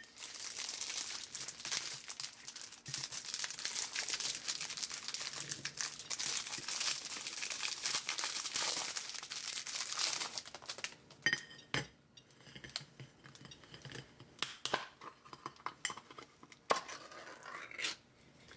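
Plastic wrapper crinkling and tearing as it is pulled off a sardine tin, for about ten seconds. Then come scattered clicks and light metallic clinks as the tin's pull-tab lid is lifted and peeled back.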